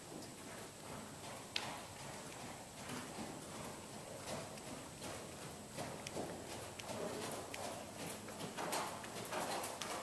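Hoofbeats of a ridden Thoroughbred gelding on the dirt footing of an indoor arena, growing louder as the horse comes closer.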